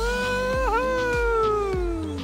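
A person's long drawn-out call, with a brief dip in pitch early on and then a slow slide downward, over background music with a steady beat.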